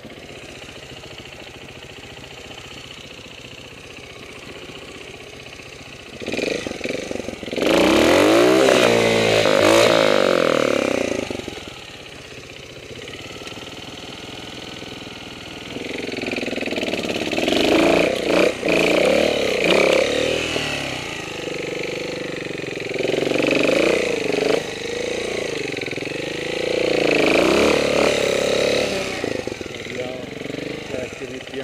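Trials motorcycle engine running low for the first few seconds, then revved hard with pitch rising and falling for about five seconds, easing off, and revved again in repeated bursts through the second half as the bike works over rough, rocky ground.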